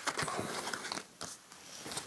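Playing cards being handled and laid down on a table: soft rustles and light ticks, dying down about a second in.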